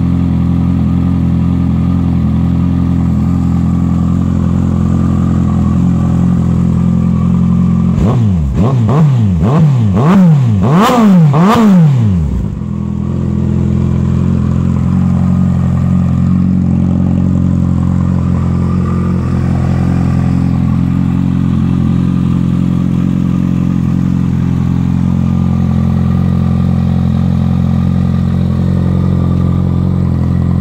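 Kawasaki ZX-14 inline-four idling steadily through a short stainless-steel aftermarket shorty exhaust. About eight seconds in it is given about five quick throttle blips in a row, each rising and falling in pitch, before it settles back to idle.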